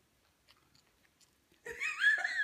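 A few faint clicks, then near the end a young child's high-pitched squealing vocalization breaking into laughter.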